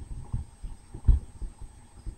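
A few soft, low thumps, the loudest about a second in, over a faint steady high-pitched whine.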